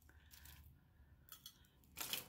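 Near silence with a few faint clicks of plastic beads on stretch-cord bracelets knocking together as they are handled in the hand, the clearest a little after a second in.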